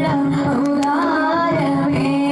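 A young solo voice singing an Islamic devotional chant (salawat) through a microphone and loudspeaker, with held, ornamented notes over a steady low sustained note.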